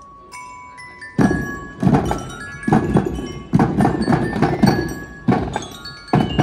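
Marching drum corps playing: a few ringing bell notes sound alone, then about a second in the drums come in with loud, rhythmic strikes, the bell tones still ringing over them.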